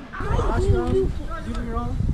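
Indistinct voices, with no clear words.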